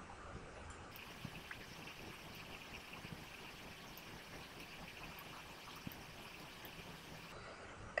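Faint steady hiss of room tone and recording noise, with a single faint click a little before the six-second mark.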